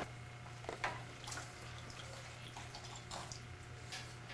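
Faint water drips and small splashes from a baby being washed with a wet washcloth in a bath seat, a few soft ones about a second in and near the end, over a low steady hum.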